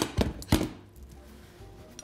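Stainless steel saucepan set down on a glass-topped cooktop with a sharp clank, followed by two lighter knocks within the first second, then faint background music.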